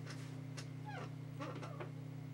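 A house cat meowing, short falling calls about halfway through, over a steady low electrical hum.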